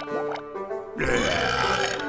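Background film music with sustained notes, with a few short sliding sound effects early on, then a louder sound effect swelling up about a second in.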